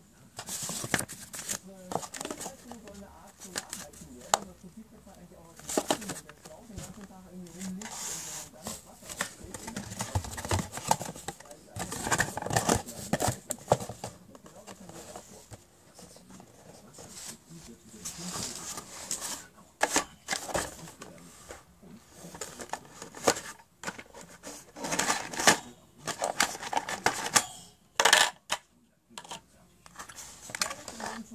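Handling of a CPU's retail packaging: irregular rustling, clicks and taps of cardboard box flaps and a clear plastic clamshell tray being moved and opened.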